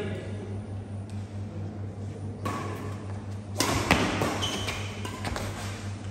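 Badminton rally: racquet strings hitting a shuttlecock, with a sharp hit about three and a half seconds in followed by further hits and court noise, over a steady low hum.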